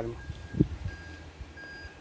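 A vehicle's reversing alarm beeping: short high beeps, evenly spaced at about three a second. A single low thump comes about half a second in.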